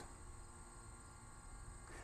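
Near silence: faint, steady background hum.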